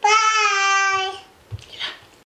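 A young girl's voice in a drawn-out, sing-song call of goodbye, held for about a second. A short breathy sound follows near the end.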